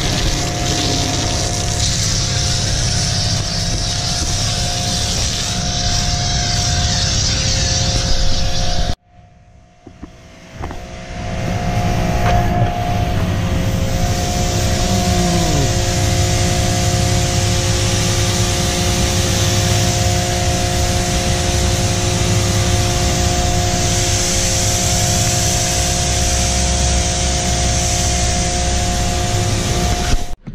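Electric pressure washer running with a steady motor hum while its wand sprays foam and water onto a car with a hiss. It cuts out about nine seconds in when the trigger is let go, then starts again and builds back up after a couple of seconds.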